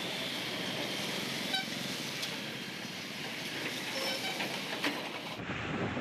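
Steady road and traffic noise heard from a vehicle moving through traffic, with a lorry passing close alongside.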